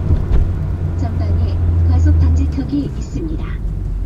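Low engine and road drone inside the cabin of a Chevrolet Aveo 1.6 hatchback, dropping away a little past halfway as the car brakes hard, with a short thump near the start.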